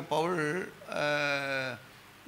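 A man's voice through the church PA speaking briefly, then holding one long drawn-out vowel for nearly a second.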